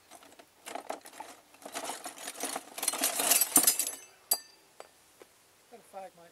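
Close scuffing and rustling handling noise, an irregular run of small clicks and scrapes that is densest about three seconds in, followed by a single sharp metallic click with a brief ring just after four seconds.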